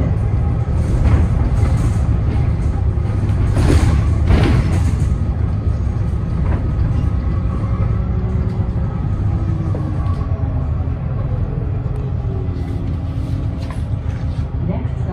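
Cabin noise of a 2010 Gillig Low Floor hybrid bus under way: a steady low rumble from its Cummins ISB6.7 diesel and Allison hybrid drive. A thin whine falls in pitch in the second half, and a short burst of rattling comes about four seconds in.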